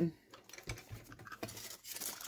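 Bristle die brush scrubbing and tapping over a thin metal cutting die on cardstock to push out the cut paper bits: faint, irregular scratches and small clicks.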